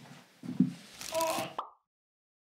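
Faint movement noises in an emptied small room: a couple of soft low thuds, then a brief higher sound with some hiss, before the audio cuts off suddenly near the end.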